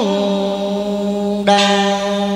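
A man singing a long, steady held note into a microphone over a karaoke backing track. A bright instrument note strikes in about one and a half seconds in.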